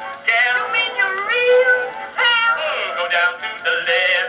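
Edison Blue Amberol cylinder record playing: an early acoustic recording of a male vocal duet singing with band accompaniment.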